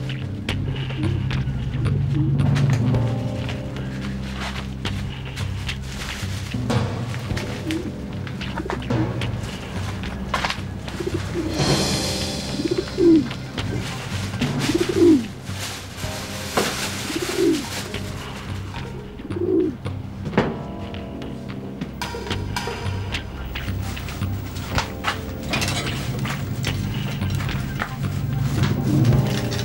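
Pigeons cooing: a run of separate rising-and-falling coos in the middle stretch, over steady background music. A few soft knocks.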